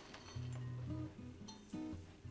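Quiet background music with guitar, a few low notes held in turn.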